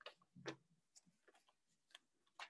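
Faint short rustles and taps of Bible pages being turned by hand, several soft strokes spaced irregularly about half a second apart.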